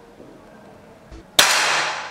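Pneumatic match air pistol fired once, about one and a half seconds in: a sharp report with a noisy tail that fades over about a second.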